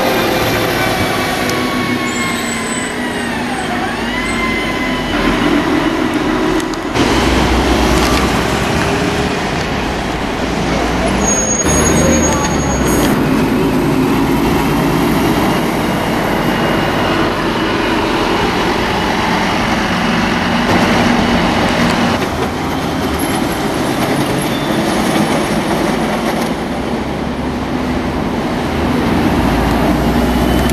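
Renault Agora city buses, standard and articulated, driving past one after another, their diesel engines running and rising and falling in pitch as they pull away, over street traffic. The sound changes abruptly several times.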